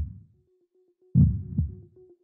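Heartbeat sound effect in an intro soundtrack: a deep double thump, lub-dub, a little past a second in, after the fading tail of the previous beat, over a steady held tone.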